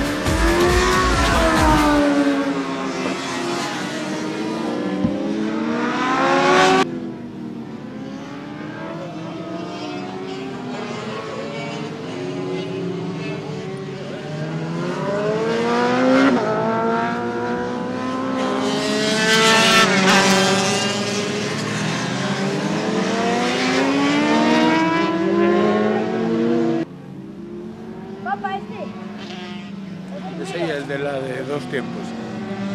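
Sport motorcycle engines revving hard as the bikes pass on a race circuit, the pitch climbing through each gear and falling away again. The sound changes abruptly about 7 s and 27 s in.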